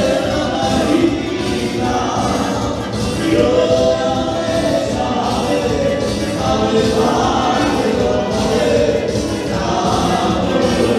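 Dance music from a band with several voices singing together over a steady beat.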